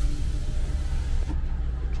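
Car engine idling, a steady low rumble heard from inside the cabin, with a hiss over it that fades about a second and a half in.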